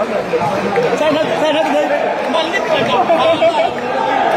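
Spectators chattering, many voices talking over one another in a large indoor hall.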